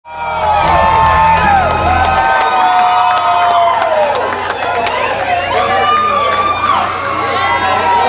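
Loud crowd cheering and whooping, many voices yelling over one another, with a deep low sound beneath that stops about two seconds in.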